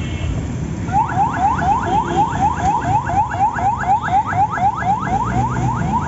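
Ambulance siren giving a fast, repeating rising whoop, about four sweeps a second, starting about a second in. Low street-traffic rumble runs underneath.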